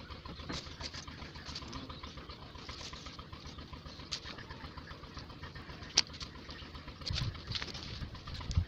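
Light clicks and taps of wire being handled and twisted onto a PVC pipe cage frame, with one sharp click about six seconds in and dull knocks near the end, over a steady background hiss.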